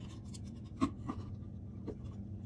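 Pliers crimping cable tether tie locks onto a plastic wheel cap: light scraping and handling with a few sharp clicks, the clearest a little under a second in and another near the end, over a faint steady low hum.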